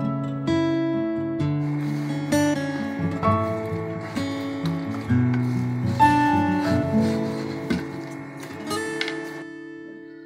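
Background music on acoustic guitar: plucked notes ringing over low bass notes, fading out near the end.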